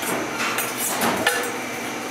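A few sharp knocks and light clatter of kitchen utensils on a wooden cutting board, spaced out over the first second and a half.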